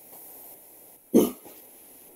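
A person gives one short cough, about a second in, over faint steady room noise.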